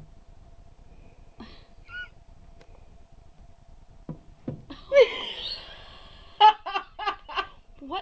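A woman laughing, starting about five seconds in with a loud burst and then a quick run of 'ha-ha' pulses. Before that it is quiet apart from a faint steady hum and a few soft taps.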